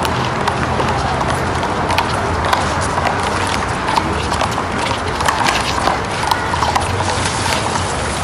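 One-wall handball rally: irregular sharp slaps of a small rubber ball struck by hand and hitting the concrete wall, mixed with players' sneaker steps on the asphalt court.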